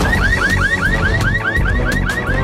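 Car alarm going off: a rapid rising chirp repeating about five times a second.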